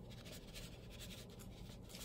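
Faint dry rustling and scratching of a powdery dry mix being sprinkled onto damp coffee grounds in a worm bin.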